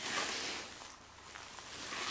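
Rustling of clothing and body movement, a soft rushing noise that is loudest at the start and fades over about a second.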